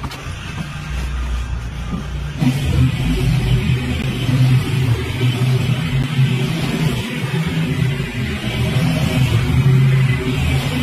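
Zero-turn riding mower's engine running steadily under load as it cuts tall, overgrown grass, coming in abruptly about two seconds in.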